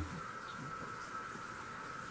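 Faint, steady room background: a low hiss with a thin high-pitched whine running under it.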